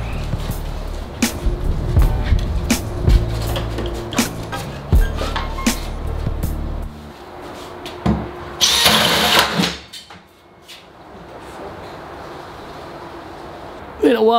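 Background music with a steady beat for the first half. About nine seconds in comes a brief, loud burst of a cordless drill driving a hole saw into a plywood cabinet panel.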